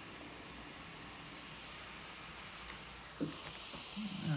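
Quiet room tone: a faint steady hiss, with one brief soft sound about three seconds in.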